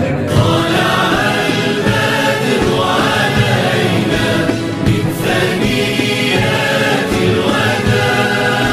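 Music with a choir of voices singing, steady and loud throughout.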